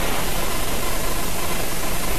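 A steady, even hiss-like rush of noise on an old film soundtrack, with no distinct events in it.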